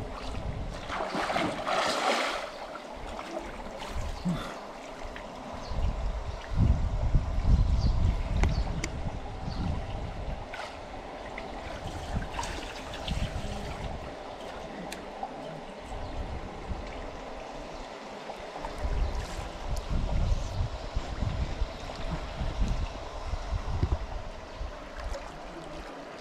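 Swimming-pool water sloshing and lapping around a person wading, with irregular low rumbles that are loudest around seven to eight seconds in.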